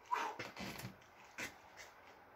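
Short strained breaths and exhales from a man getting up after a set of push-ups, in three or four short bursts, the first falling in pitch.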